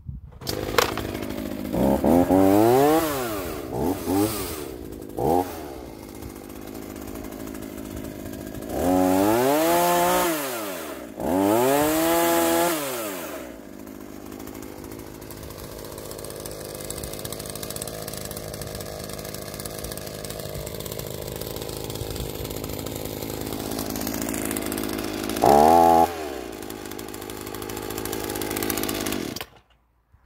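Two-stroke petrol chainsaw starting up and revving in several rising-and-falling bursts, then two longer full-throttle runs as it cuts through an upright olive branch. It settles to a steady idle, revs once more briefly near the end, and then cuts off.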